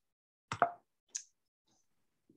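Silence broken by a short, sharp click about half a second in, followed by a fainter high tick a little later.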